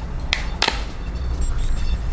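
The snap-on plastic back cover of a Samsung Galaxy S II being pried off with the fingers, its clips letting go with two sharp clicks about a third of a second apart.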